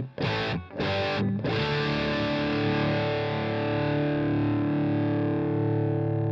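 Electric guitar through the Egnater Boutikit 20-watt 6V6 tube amp head, with the gain turned all the way up and the master volume turned low. Two short distorted chord stabs come about a second apart, then a chord is left to ring with long sustain.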